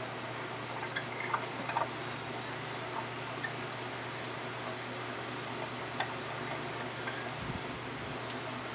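Potter's wheel running with a steady low hum while a plate of wet clay is thrown on it by hand, with a few small clicks from the hands on the clay, a cluster in the second second and single ones near three and six seconds in.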